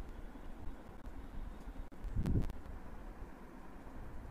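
Low, steady background rumble with a few faint clicks, and a short low thump about two seconds in.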